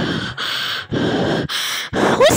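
A person breathing heavily and fast close to the microphone, four loud breaths in two seconds.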